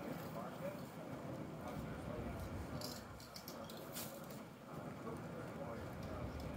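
Indistinct voices of people talking at a distance, with a few light clicks or taps about three to four seconds in.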